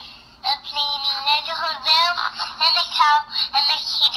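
A toddler's wordless, sing-song voice played back through the small, tinny speaker of a recordable storybook, starting about half a second in.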